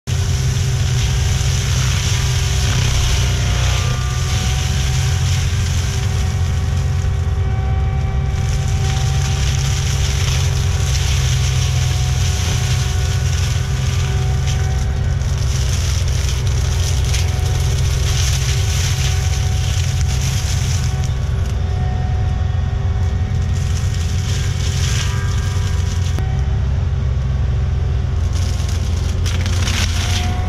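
ASV RT-120F compact track loader running under load with its Prinoth M450s forestry mulcher head spinning, a steady drone and hum as the drum grinds through dense shrubs. The shredding noise swells and drops as branches are fed in and the head is lifted.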